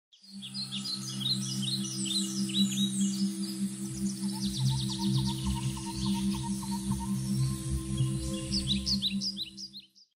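Ambient intro music: a steady low drone under many short, high birdsong chirps. It fades in near the start and fades out near the end.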